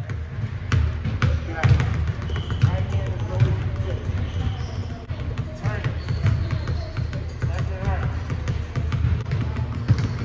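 Several basketballs being dribbled on a hardwood gym floor: a rapid, irregular run of bounces from more than one player at once.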